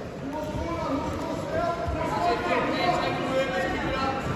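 Indistinct voices of coaches and onlookers calling out, carrying through a large sports hall, louder in the second half. A dull thump or two from bodies on the competition mats sits under the voices.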